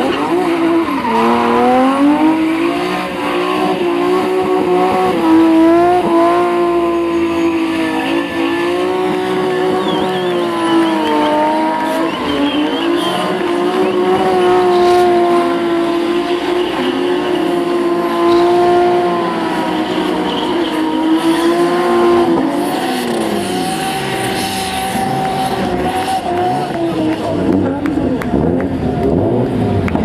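BMW E30 drift cars drifting with tyres squealing and an engine held at high revs, its note steady for about twenty seconds while the tyres smoke. Near the end several engine notes fall and rise across each other as the cars swing past.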